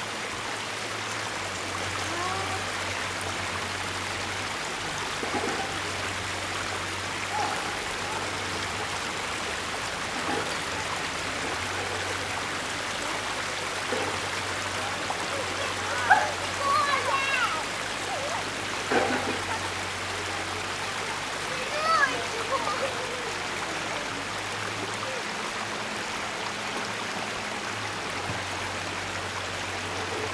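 Steady rush of river water running, with faint voices calling out now and then, most clearly around the middle and again near the end.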